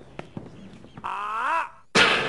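A drawn-out vocal cry, about two thirds of a second long, that bends in pitch and rises at its end before cutting off sharply. Before it there are only faint scattered clicks and low background noise.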